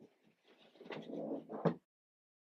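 Handling noise from a patent-leather sneaker: rubbing and rustling that builds over about a second and ends in a sharp knock, after which the sound cuts off abruptly.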